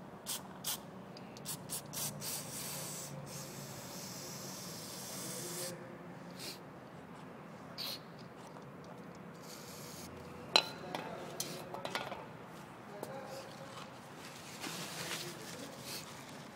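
An aerosol can of carburetor cleaner is sprayed through a thin straw nozzle in short hissing bursts and longer blasts, washing dirt and gunk out of a small carburetor part. One sharp click comes about ten seconds in.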